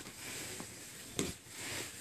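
Two grapplers shifting on foam mats: low rustling of bodies and clothing against the mat, with one soft thump a little past a second in.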